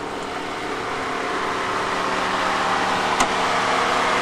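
Merkur XR4Ti's four-cylinder engine idling with the hood open after a high-speed pass, with a steady hiss over a low hum that grows slowly louder, and a single sharp tick about three seconds in.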